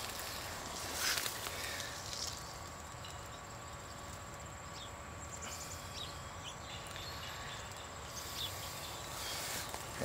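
Quiet outdoor garden ambience with a faint steady insect drone. A brief rustle comes about a second in.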